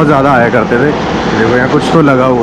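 A voice talking over the steady road noise of a moving car.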